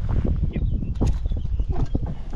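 Wind buffeting the microphone in a low, steady rumble, with a few sharp clicks about a second in and again near the end.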